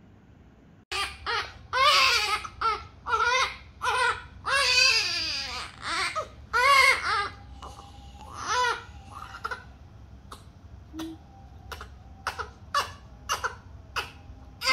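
A newborn baby crying: a run of loud wailing cries begins suddenly about a second in, and after several seconds gives way to shorter, fainter cries.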